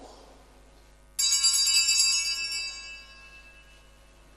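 Small altar bells shaken once: a bright, high ringing of several bells that starts sharply about a second in and dies away over about two seconds.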